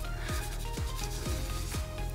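Faint rubbing of a paper towel over gloved hands as they are wiped clean, under quiet background music.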